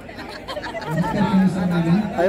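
Only speech: people talking over general party chatter.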